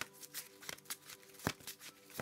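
Tarot cards being handled, giving a scatter of faint light clicks and flicks over a faint steady hum.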